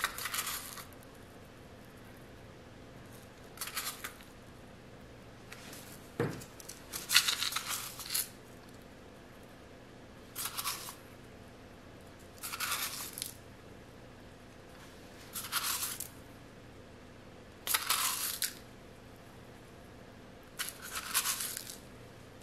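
Pinches of coloured salt sprinkled by hand over the top of soap in the mold: a short gritty hiss with each pinch, repeated every two to three seconds, with one light knock about six seconds in.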